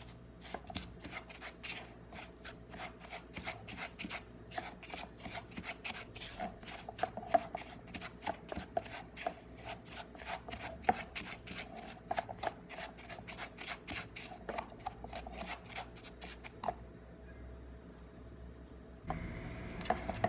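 Silicone spatula scraping and stirring dry granulated sugar in a non-stick saucepan, a quick gritty scratching of several strokes a second as the undissolved sugar crystals are worked to melt them into caramel. The stirring stops a few seconds before the end.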